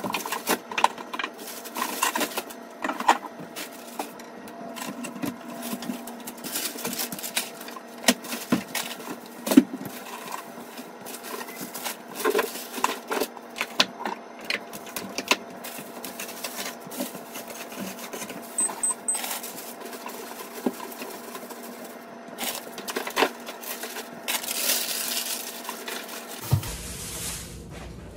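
Groceries being put away into a refrigerator and freezer: irregular knocks and clicks of packages, bottles and containers set on shelves and against the door, with rustling packaging, over a steady hum. A longer rustle comes near the end.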